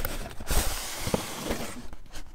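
A styrofoam casing being slid out of a cardboard box: a soft thump, then about a second of rubbing hiss that stops shortly before the end, with a light knock partway through.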